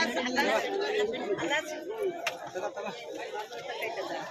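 Several people talking at once: overlapping chatter from a small crowd, with one brief sharp click a little over two seconds in.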